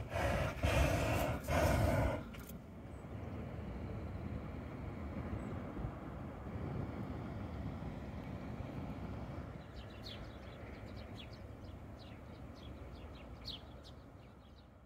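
Hot-air balloon propane burner firing overhead in three short blasts during the first two seconds. A steady low background noise follows, with small birds chirping in the last few seconds.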